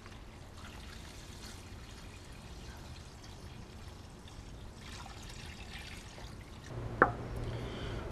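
Brine poured from a plastic pitcher into a zip-lock bag, a faint steady trickle of liquid. Near the end a low hum comes in and there is a single click.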